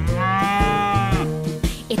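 A cartoon cow mooing: one long call lasting about a second, over a children's-song backing track.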